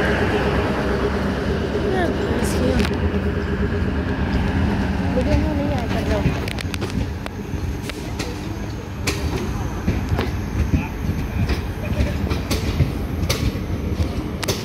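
CNG DEMU train pulling away: the power car's engine hums steadily at first, then fades as the coaches roll past. From about halfway in, the wheels clack sharply and irregularly over the rail joints.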